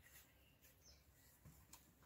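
Near silence: faint room tone with a few tiny soft ticks from the needles, thread and leather being handled.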